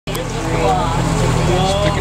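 People talking over the steady low hum of a boat's engine.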